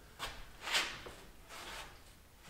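A few soft scuffs and rubs as a grooved plywood wall panel is pushed and shifted against the wall framing by a gloved hand, the clearest about three-quarters of a second in.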